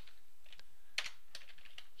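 A few faint computer keyboard keystrokes as a chemical formula is typed, the loudest about a second in.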